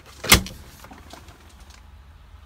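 A single sharp clack of a small refrigerator door shutting, about a third of a second in.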